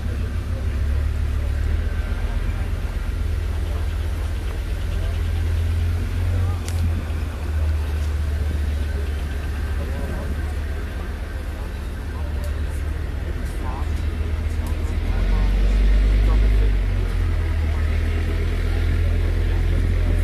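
Leopard 1A5 tank's V10 multi-fuel diesel engine rumbling as the tank runs past at a distance, swelling louder about three-quarters through, over a crowd's murmur.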